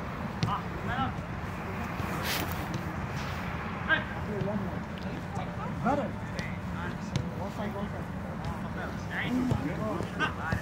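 Scattered shouts and calls of players during an outdoor small-sided soccer game, over a steady low hum. A short sharp knock about two seconds in.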